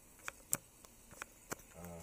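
Four sharp, irregular clicks over faint room tone, the one about half a second in the loudest.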